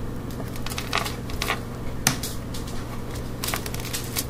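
Wire snippers cutting through a coil of wire, snipping off jump rings one at a time: a string of sharp, irregular clicks.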